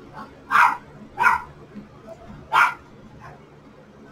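A dog barking: three short barks, the first two close together and the third after a pause of more than a second.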